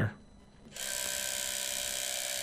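Spring-wound clockwork motor of a Cine-Kodak Medallion 8 8mm movie camera running with a steady, even whir that starts just under a second in.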